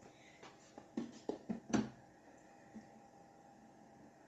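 A few light clicks and knocks in the first two seconds as the 3D printer's plastic front door is opened and the build plate is handled, then near quiet.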